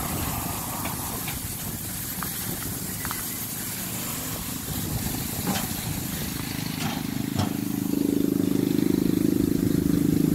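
Low rumbling with a few sharp knocks as a loaded dolly sits and shifts on a truck's diamond-plate liftgate. About seven seconds in, a steady motor hum starts and grows louder as the liftgate lowers.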